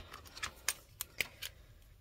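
A few light, sharp plastic clicks as a dual tip marker pen is pulled from its plastic case and handled.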